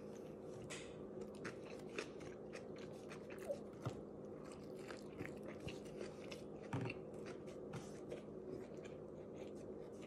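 Faint close-up chewing of a mouthful of flatbread sandwich: small irregular mouth clicks, one slightly louder about seven seconds in, over a steady low hum.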